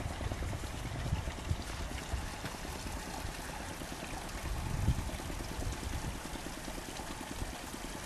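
Steady outdoor noise with low gusts of wind on the microphone, the strongest about five seconds in.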